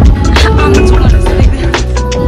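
Background music with a heavy bass line and a steady drum beat.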